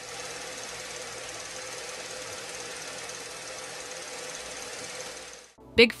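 A steady, fast mechanical rattle with hiss, like a small machine running, which stops suddenly about five and a half seconds in.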